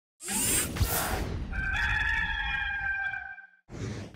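Intro sound effect: a rushing swoosh, then a rooster crowing once, a single held call of about two seconds that cuts off about three and a half seconds in.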